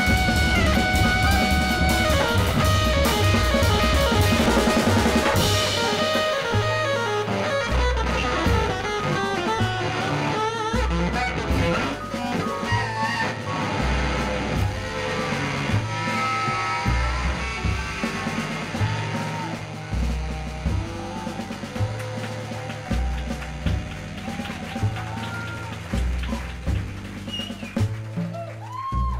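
Live jazz band playing an instrumental introduction with electric guitar, piano, double bass and drum kit. The full ensemble is loud and dense for about the first six seconds, then thins out to a sparser groove carried by the bass and drums.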